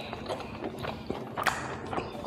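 A person chewing a mouthful of fried pork close to a lapel microphone, with a run of wet mouth clicks and smacks; one louder click about one and a half seconds in.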